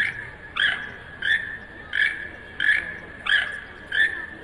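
Toucan calling: a short croaking call repeated evenly, about three every two seconds.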